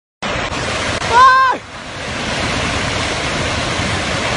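Loud, steady rush of fast-moving water, with a person's brief high-pitched shout about a second in.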